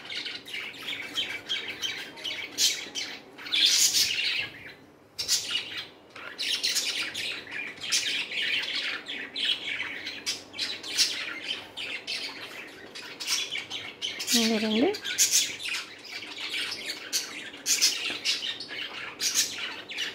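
Birds chirping rapidly and continuously in the background, with one brief vocal sound about three-quarters of the way through.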